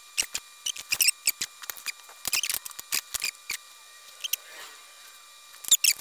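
Pencil scratching on a wooden block in short strokes, drawing lines along a steel square and tape measure. The quick scratches come thick in the first three and a half seconds, pause, then come again near the end.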